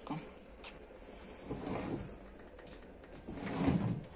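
Light clicks and knocks from an open dishwasher's wire racks and the dishes in them being handled, a sharp click or two near the start and a duller rattle near the end.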